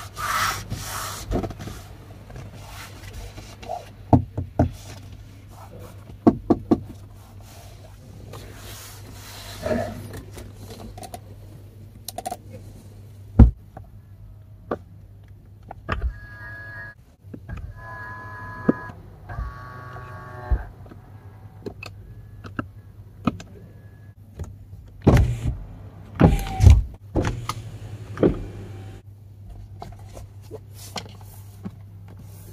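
Car interior trim being handled: scattered clicks, taps and knocks from panels and fittings over a low steady hum. About halfway through, a small electric motor in the car whines in three short runs.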